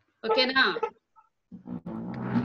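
Speech only: a voice says "okay", there is a brief gap, and then voices start again near the end.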